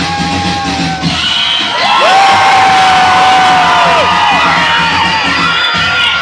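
Loud live music over a cheering, shouting crowd. The bass drops out about a second in, and a long held note comes in about two seconds in and carries on for about two seconds.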